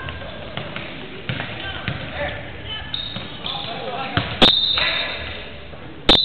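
Basketball bouncing on a hardwood gym floor amid players' and spectators' voices, with a loud sharp knock about four and a half seconds in.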